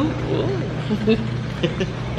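Quiet talking voices over a steady low hum.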